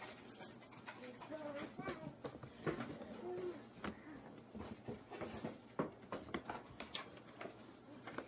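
Irregular clicks and knocks of plastic compost-tumbler parts and hardware being handled during assembly, with short snatches of a voice.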